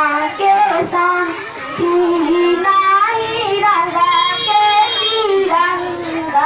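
A girl singing a patriotic folk song solo into a microphone, her melody moving between long held notes.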